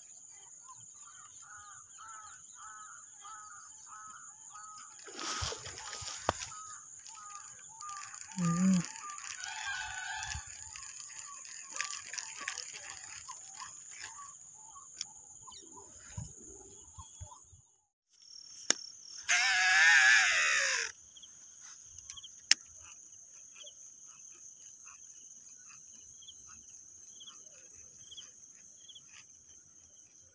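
An evening chorus of crickets buzzing steadily, high-pitched, with birds or fowl calling in quick repeated notes for the first half. About twenty seconds in comes one loud cry that falls in pitch.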